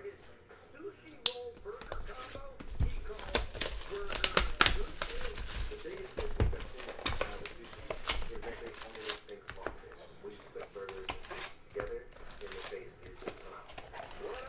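A cardboard hobby box of basketball cards being opened and its foil card packs handled: a sharp click about a second in, then irregular rustling and crinkling of cardboard and foil wrappers.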